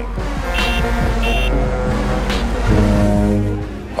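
Background music mixed with road traffic: a motor vehicle passes, loudest about three seconds in.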